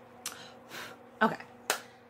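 A single sharp click near the end, after a spoken "okay" and two short breathy hisses.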